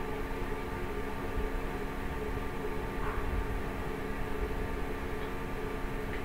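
Steady room background noise: an even hiss and low rumble with a few faint steady hum tones running throughout, with no distinct events.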